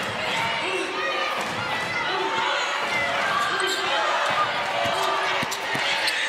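Basketball dribbled on a hardwood court, its bounces heard over the steady murmur of arena crowd voices and players calling out.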